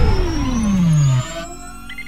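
Synthesized intro sound design: a tone glides steadily down in pitch over a low rumble, then drops away about a second in, leaving quieter, faint high tones that rise slowly.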